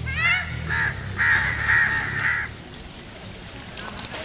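Crows cawing: a quick run of short calls, then a few longer harsh caws that stop about two and a half seconds in.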